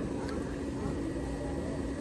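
Steady low background hum of a room, with a faint constant tone and no distinct events.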